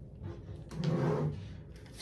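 Handling noise as small objects are moved and set aside: a soft rustle and knock, swelling about a second in together with a short low hum.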